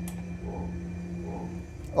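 Steady low hum of the A320 flight-simulator cockpit, with a flat low tone that stops shortly before the end, as the engine masters are switched off.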